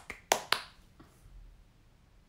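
A person clapping: two sharp handclaps in quick succession near the start, then a faint tap about a second in.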